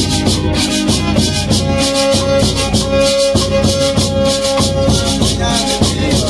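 Live violin and guitar playing a lively tune, with an even beat of crisp strummed strokes about four or five a second. The violin holds one long note through the middle.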